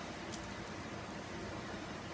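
Metal fidget spinner spinning on its bearing between the fingers, a faint steady whir, with one light click about a third of a second in.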